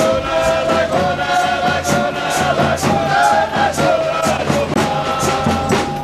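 A group of men singing a boi de mamão folk song together, with a steady hand-percussion beat from a drum and tambourine under the voices. The singing breaks off at the very end.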